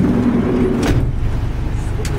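Van engine running, heard from inside the cabin as a steady low rumble. A short click sounds about a second in.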